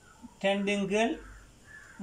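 A man's voice speaking one short, drawn-out phrase in Tamil, in a small room.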